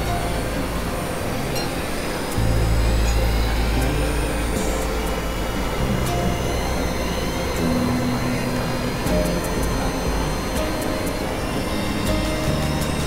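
Experimental electronic synthesizer noise and drone music: a dense hiss over low held bass tones that shift pitch, with a louder low drone coming in about two seconds in. Faint gliding tones and scattered clicks sit high above it.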